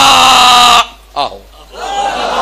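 A man's voice: a loud, drawn-out exclamation held on one pitch, then a short spoken 'aaho' ('yes'). Near the end a wash of audience laughter rises.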